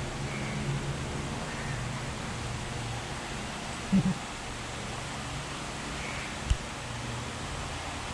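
Steady indoor room hum with a short low sound about four seconds in and a single sharp click about six and a half seconds in.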